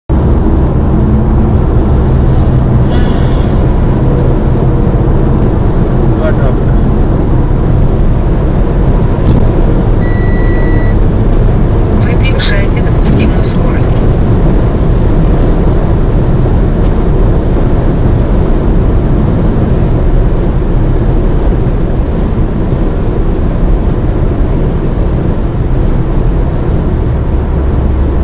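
Car cabin noise at motorway speed: a steady, loud rumble of road, tyres and engine. About ten seconds in a short electronic beep sounds for about a second, and soon after comes a brief run of sharp clicks.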